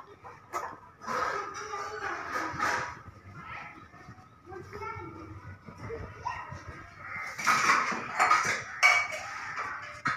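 Voices talking, with a single sharp click about half a second in.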